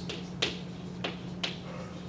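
Chalk striking a blackboard while writing, in four sharp taps about half a second apart, over a steady low hum.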